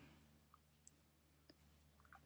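Near silence: faint room tone with about three small, quiet clicks of a computer mouse.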